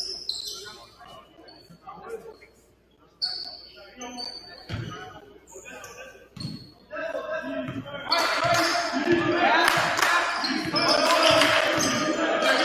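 Basketball bouncing on a hardwood gym floor, with short high sneaker squeaks, echoing in a large hall. About two-thirds of the way in, loud shouting voices start and become the loudest sound.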